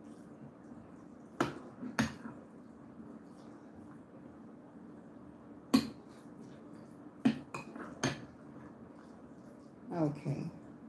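Metal spoon clinking against a glass mixing bowl while stirring a salad: a few sharp taps, two about a second and a half and two seconds in, the loudest near six seconds, and three more between seven and eight seconds, with soft scraping in between.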